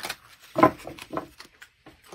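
A few light knocks and rustles of objects being handled on a table, the loudest about half a second in.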